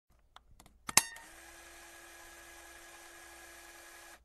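A few faint clicks, then one sharp click about a second in, followed by a steady hiss with a faint low hum, like the noise floor of a recording being switched on at the start of a track.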